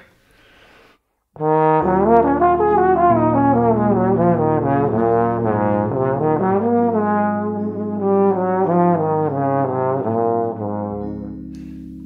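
Trombone playing a fast jazz run, an arpeggio up and then a G-flat harmonic major scale down over a B-flat 7 chord. It starts about a second and a half in and tapers off near the end, over sustained low chord tones that change every few seconds.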